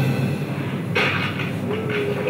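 Film-clip soundtrack played through a hall's loudspeakers: a steady low rumble of sound effects with the music dropped out, and a sudden hit about a second in followed by a few short clattering strokes.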